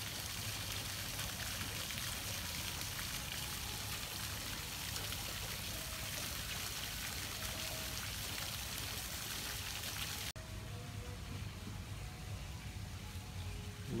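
Steady splashing of water from a small tiered stone fountain. About ten seconds in, the bright hiss cuts off suddenly and a duller, quieter wash carries on.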